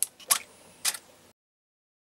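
Two sharp mechanical clicks about half a second apart from a water-drop photography rig being fired (camera shutter and solenoid drop valve). The sound then cuts off suddenly a little over a second in.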